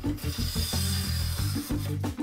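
A 50 mm-blade Japanese hand plane (kanna) taking one long stroke along the length of a wooden board, the blade cutting a continuous shaving with a steady hiss for about a second and a half. Background music with a beat plays underneath.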